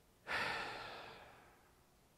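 A person sighing: one long breath out starting about a third of a second in and fading away over about a second.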